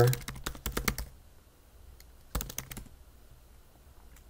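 Typing on a computer keyboard in two short flurries of keystrokes, the first in the opening second and the second about halfway through.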